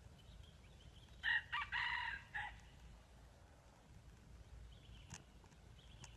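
A red junglefowl rooster crows once, a short broken crow of about a second and a half, starting a little over a second in.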